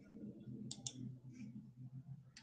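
Two faint, sharp clicks close together about two-thirds of a second in, with a few softer ticks, over a low steady hum.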